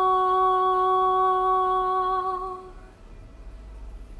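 A woman's voice holding one long, steady wordless note, which wavers slightly and fades out about two and a half seconds in, leaving only a low hum.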